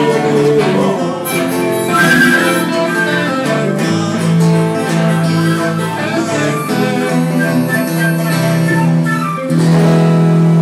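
Live blues played by a small band of acoustic guitar, electric guitar, lap steel guitar and pipa, with a wind instrument adding a melody line; a low note is held under the playing from about the middle onward.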